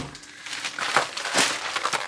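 Plastic grocery packaging crinkling and rustling as shopping is handled and lifted out, with a few sharper crinkles about a second in.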